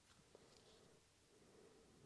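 Near silence: room tone, with one faint tick about a third of a second in.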